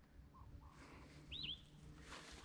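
Near silence with one faint, brief bird chirp of two quick swooping notes, a little past halfway.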